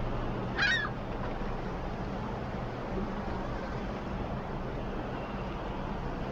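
A single short bird call, under half a second, shortly after the start, over a steady low hum and an even wash of noise.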